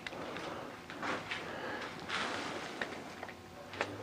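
Faint footsteps on a concrete floor and rustling handling noise as a handheld camera is carried around, with a few light clicks near the end.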